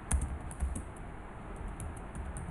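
Typing on a computer keyboard: a quick, irregular run of key clicks, the loudest just after the start.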